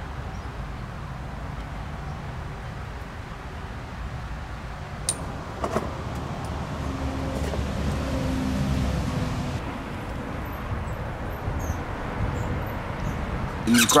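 Steady low outdoor rumble, swelling for a few seconds in the middle, with a couple of light clicks about five to six seconds in.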